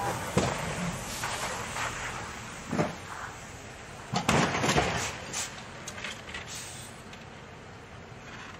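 A car sliding on a snowy road and hitting the kerb, with a cluster of loud bangs a little after four seconds in over a steady noisy background and a few lighter knocks.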